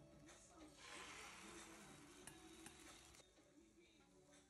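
Beaten egg poured into a hot square tamagoyaki pan, sizzling faintly for about two seconds with a few light clicks, then dying away near the end.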